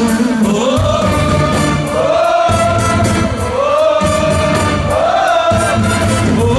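A male singer sings a melody over a live band playing keyboard and bass with a steady beat, recorded from the audience.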